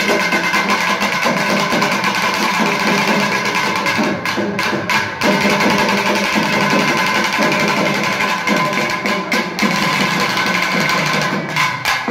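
Naiyandi melam folk ensemble playing loudly: thavil barrel drums beating fast and dense under a steady, high nadaswaram reed-pipe melody.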